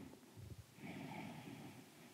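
A woman's faint breath through the nose, a soft exhale a little under a second long that starts just before the middle, while she holds a seated forward fold.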